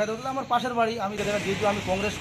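A man talking, with a steady hiss coming in behind the voice about a second in.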